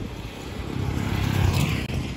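Wind buffeting a phone microphone outdoors, a low irregular rumble that swells and dips, with a brief brighter hiss about a second and a half in.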